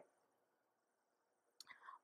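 Near silence in a pause in the talking, then a faint mouth click and a soft intake of breath near the end, just before the speaker goes on.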